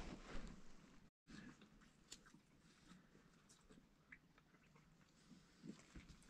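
Near silence, with only a few faint, short clicks and rustles.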